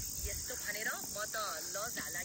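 Steady high-pitched chirring of insects in dry grassland, with faint distant voices talking underneath.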